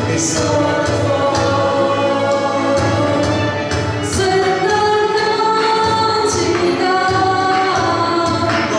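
Live a cappella vocal group singing in close harmony, accompanied by a string ensemble of violins, cellos and double bass, over a steady beat.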